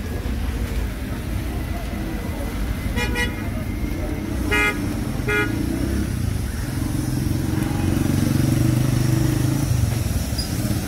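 Street traffic: a steady low rumble of vehicle engines, with three short car-horn toots about three seconds in, the last two close together. A vehicle engine grows louder in the last few seconds.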